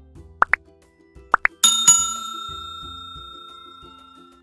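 Button-click sound effects: two pairs of quick rising pops, then a bright bell chime about one and a half seconds in that rings on and slowly fades, over quiet background music.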